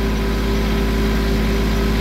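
Compact tractor engine running steadily at an even speed as the tractor drives along, heard from the operator's seat.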